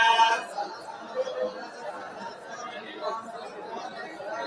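Many voices talking at once, a murmur of chatter. In the first half second the tail of a group chant with held notes dies away into it.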